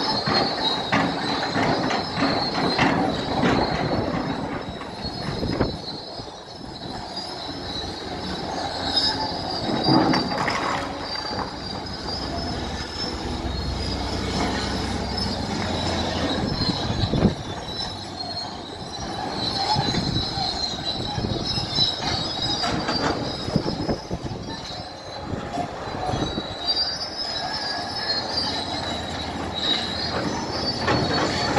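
Tracked heavy construction machinery working: steel crawler tracks squealing and clanking over the steady running of a diesel engine. The high squeals come and go throughout.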